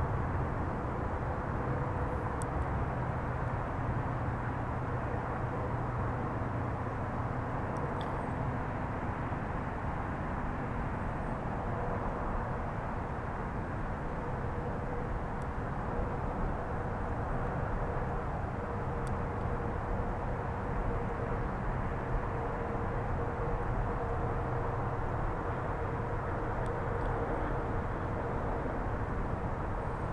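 Steady low outdoor rumble with a faint hum running under it, and a few faint ticks scattered through.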